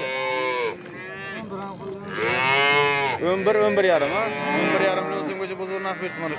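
Cattle mooing repeatedly: about five drawn-out, arching calls, the loudest about two to three seconds in.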